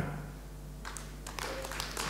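Audience applause, starting as scattered claps about a second in and building to denser clapping toward the end.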